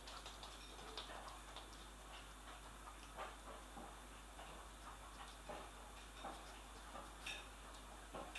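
Faint, irregular clicking of a Shih Tzu puppy's claws on a laminate floor as it walks about.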